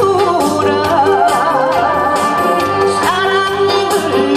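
A woman singing a Korean trot song live into a handheld microphone over backing music with a steady beat. Her voice wavers through an ornamented phrase, holds one long note, then slides upward about three seconds in.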